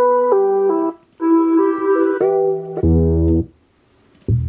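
Melodic sample loops in E minor at 80 BPM played back in short snippets one after another: a first phrase, a sustained chord with shifting notes, then a deeper, bass-heavy chord, each cut off abruptly, with a short silence between the first two and a longer one near the end.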